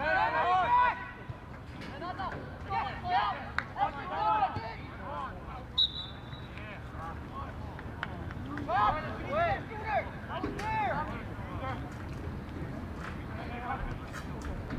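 Players and coaches shouting calls across a soccer field in short bursts, loudest at the start and again around nine to eleven seconds in, over a steady low rumble. A short high-pitched tone sounds about six seconds in.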